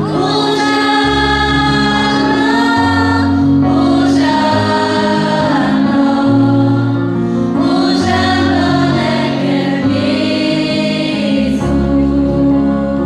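Many voices singing a Christian hymn together, in long held phrases that change roughly every four seconds over a low bass line.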